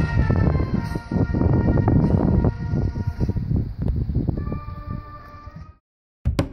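Brass marching band playing outdoors, with sousaphones, trumpets and saxophones, over a dense low rumble. The sound thins to a few long held notes in the last seconds and then cuts off abruptly just before the end.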